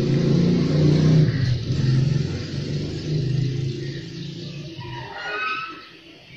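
Low rumble of city road traffic, strongest in the first half and fading toward the end, with a few short high-pitched notes near the end.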